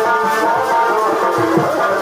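Purulia Chhau dance accompaniment music: a sustained, wavering melody over quick drum strokes.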